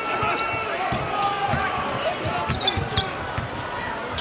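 Basketball arena game sound: a ball dribbling on the hardwood court, with short thuds, over a steady bed of crowd noise and indistinct voices.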